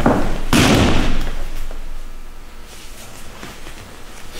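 Two judoka landing on the tatami mat in a sumi gaeshi sacrifice throw: a thud at the start and a louder one about half a second in, followed by a second or so of rustling as they roll, which then fades.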